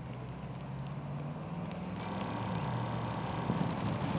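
A Porsche Panamera approaches with a low engine hum. About halfway in, a high-pitched steady buzz starts from the Sony A9 III firing a 120-frames-per-second continuous burst, and near the end it breaks into rapid pulses, about ten a second.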